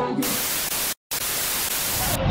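Television static hiss used as an edit transition effect, a loud even rush of noise that drops out completely for a split second about halfway through.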